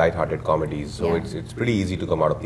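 Speech only: a man talking, with no other sound standing out.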